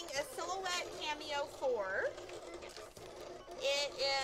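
Women's voices talking quietly, words not made out, with faint background music.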